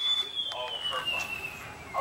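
A single high whistling tone sliding slowly and smoothly down in pitch for about two seconds, with faint voices underneath.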